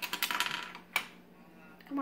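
Loose plastic Lego pieces clattering as a hand rummages through them on the tabletop: a quick run of rattling clicks, then a single sharp click about a second in.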